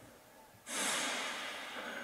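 A man blowing out a long, noisy breath through pursed lips. It starts suddenly a little over half a second in and slowly fades.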